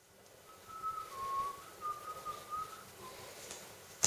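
A person whistling a short tune: a string of held notes stepping up and down between a few pitches, then a couple of fainter notes near the end.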